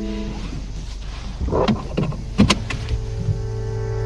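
Drama soundtrack in a car scene: soft held music notes, broken by a quick run of sharp clicks and knocks about one and a half to two and a half seconds in.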